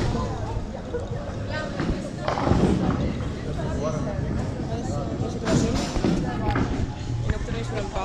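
Voices of several people talking in a busy bowling alley, with a steady low hum underneath.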